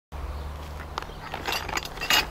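A clear plastic bag being handled, with short crackles, most of them between about a second and a second and a half in, over a steady low hum.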